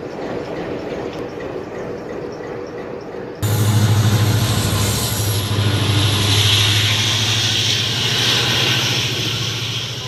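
Diesel locomotive engine running: a steady low hum under a hiss, coming in suddenly about three and a half seconds in. Before it there is a quieter, even rushing noise.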